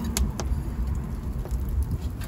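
Wood fire burning in an open hearth, crackling with a few sharp pops, over a steady low rumble.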